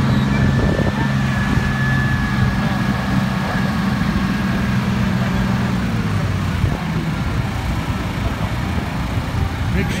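An art car's engine running with a steady low drone as it drives along a busy street, with road rumble and wind noise around it. A thin high tone fades out about four seconds in.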